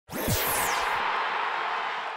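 Channel logo sting: a sudden swoosh with a high pitch sweeping down and a low falling tone, then a wash of noise that slowly fades away.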